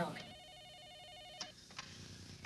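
Electronic desk telephone ringing: a warbling trill lasting just over a second, then stopping, followed by a couple of faint clicks as the handset is lifted.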